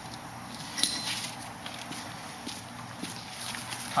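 Footsteps and handling noise, with one sharp knock about a second in.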